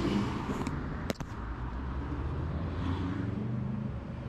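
Road vehicle engines running steadily in street traffic, a low hum with a light hiss, and a single sharp click about a second in.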